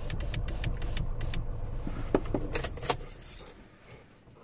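A car's engine idling with a low rumble, under repeated light metallic jingling and clicking that thickens into a burst about two and a half seconds in. The rumble then stops and the sound dies away near the end, as when the engine is switched off.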